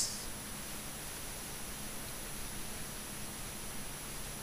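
Steady background hiss with a faint low hum and no distinct events: recording noise or room tone.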